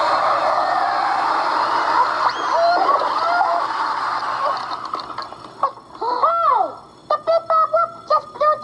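A puppet monster's long, rushing blast of breath, a huff-and-puff gust that knocks the brick letters over. It fades after about five seconds, and a high cartoon voice takes over with gliding 'uh oh'-like calls and choppy sung phrases.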